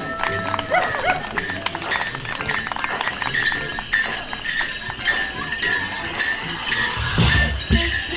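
Bells and jingles on dancers' regalia clinking with their steps. There is a brief wavering call right at the start. About seven seconds in, a steady drum beat comes in at roughly three beats a second.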